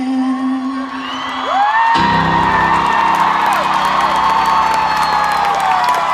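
Concert crowd cheering, screaming and whooping at the end of a song. A held note ends first, then the crowd noise swells suddenly about two seconds in and stays loud.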